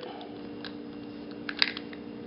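Light clicks and taps of a folding metal multi-tool being handled and fitted, a few faint ones early and a small cluster about one and a half seconds in, over a steady low hum.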